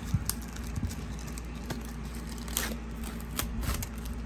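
Thin plastic shrink-wrap being peeled and torn off a cardboard box, in scattered crinkles and crackles, the busiest near the end.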